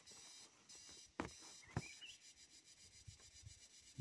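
Faint scratching of a ballpoint pen writing on paper, with two sharp clicks a little over a second in and again about half a second later.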